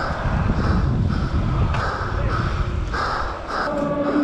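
Wind rushing over a helmet camera and BMX tyres rolling on concrete, a steady low rumble, with a string of short harsh cries repeating about every half second over it.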